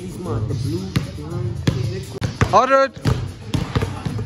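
Hip hop track playing back over a speaker, with rapped vocals, a rising vocal ad-lib near the middle, and a heavy bass beat. Sharp thumps come about every two-thirds of a second.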